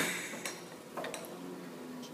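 Metal fork clinking against a bowl as it spears pieces of fruit salad: a few faint, light clicks.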